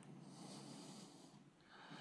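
Near silence: room tone with a faint breathing-like hiss on a close microphone, swelling twice.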